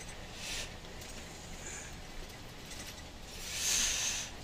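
Inside the cab of a Volvo 730 semi truck on the move: a low, steady engine and road rumble, with a brief faint hiss about half a second in and a louder hiss near the end.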